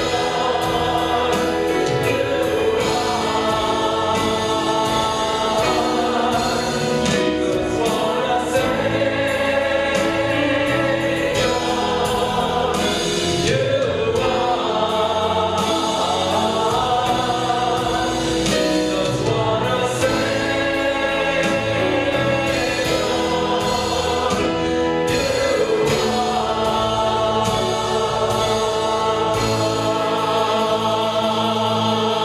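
Church choir and worship singers singing a gospel song in long held phrases, with a live band that includes electric bass and percussion.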